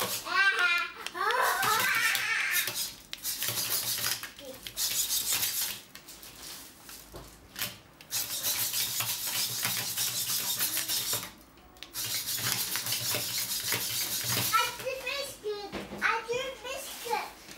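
Bioloid humanoid robot's servo motors whirring in three long bursts as its legs move and step, with the plastic feet clattering and rubbing on a hard tabletop; the ankle servos are unscrewed and left to wobble freely. A child's voice is heard at the start and again near the end.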